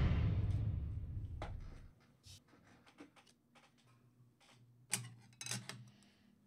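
An on-screen transition sound effect dies away over the first two seconds. Then come faint scattered clicks, and a few sharper plastic clicks and crackles near the end as a clear plastic card case is handled.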